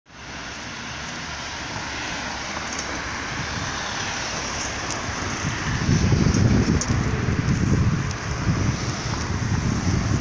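Steady street traffic hiss, then a car driving past close by on a wet road about six seconds in, followed by uneven low rumbling from wind on the microphone.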